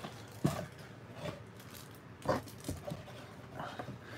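A few faint, separate taps and rustles of cello-wrapped trading card packs being lifted out of a cardboard box and stacked on a table.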